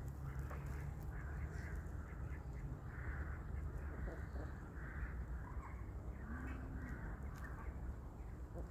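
A few distant bird calls, each short and separate, over a low steady rumble.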